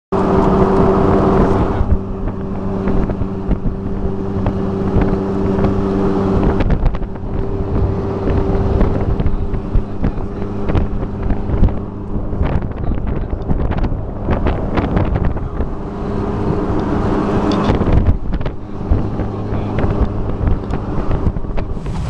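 Jeep Wrangler's engine running at steady revs, heard from inside the cabin as it crawls over a rocky trail, with frequent knocks and rattles as the vehicle bounces.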